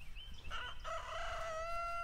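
Rooster crowing: a few short notes about half a second in, then one long held note.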